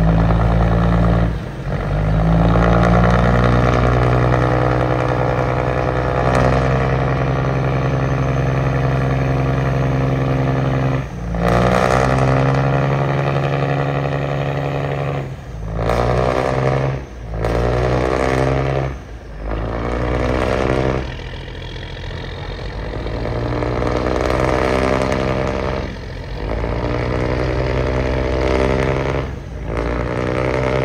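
A river boat's diesel engine run hard to drive the grounded boat off the shallows, churning the water with its propeller. The throttle is eased off briefly about six times, and each time the engine revs back up, rising in pitch.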